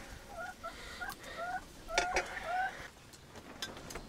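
A chicken clucking in a string of short calls, with a few sharp clinks of a metal spoon on a steel plate, the loudest about two seconds in.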